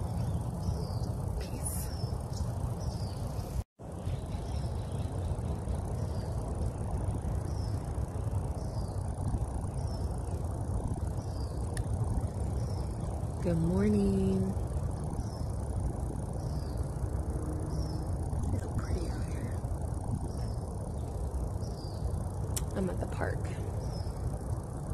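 Outdoor ambience: a steady low rumble, with a small bird chirping a high note about once a second.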